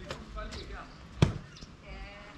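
A single loud thump a little over a second in, over faint distant voices.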